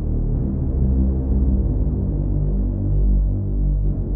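Logic Pro Alchemy synthesizer playing a low sawtooth drone bass: several detuned voices, low-pass filtered so it sounds dull and buzzy, with a slow, uneven shifting of the detune from a random LFO, washed in plate reverb.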